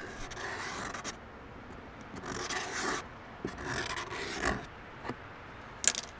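Marker pen tracing around the holes of a plastic template on a plastic ammo can lid: dry, scratchy rubbing in three passes. A sharp tap comes near the end.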